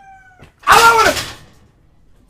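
A single loud cry, about half a second long, rising and then falling in pitch.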